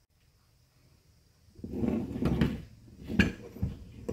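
Plastic rubbing and knocking as a black plastic pipe with a zip-tie round it is slid into a PVC pipe holder on a wall, with a sharp knock and a softer clatter near the end.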